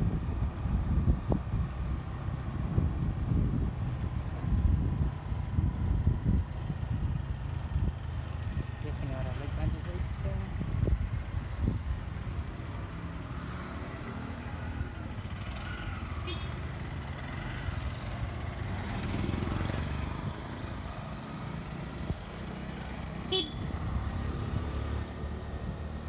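Motorcycle engine running as it rides along a street, with a heavy, uneven rumble of wind on the microphone that is strongest in the first half.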